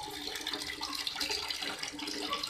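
Water running steadily from a tap, a continuous splashing hiss.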